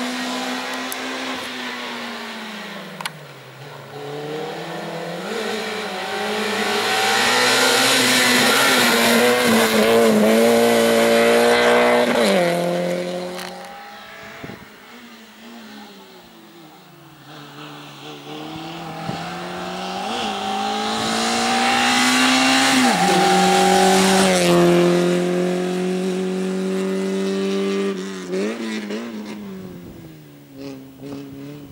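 A racing hatchback's engine revving hard through a cone slalom. Its pitch climbs under full throttle and falls sharply when the driver lifts off or shifts, twice over as the car comes close, with a quieter lull between.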